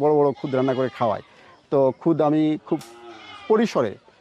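People's voices calling out in short bursts, with pauses between them.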